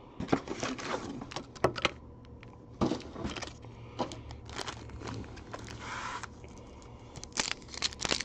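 Foil trading-card pack wrappers crinkling and rustling as the packs are handled, with scattered sharp clicks and taps of cards on the table.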